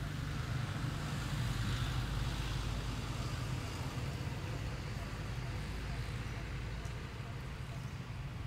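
A motor vehicle's engine running steadily at idle: a constant low rumble.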